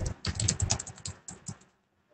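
Typing on a computer keyboard: a quick run of key clicks that stops about a second and a half in.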